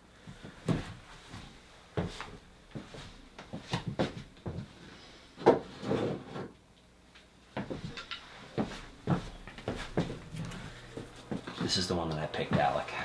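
Pieces of cottonwood bark being handled and pulled down from a wooden rafter shelf: a string of irregular knocks and clatters of wood against wood, the loudest about halfway through.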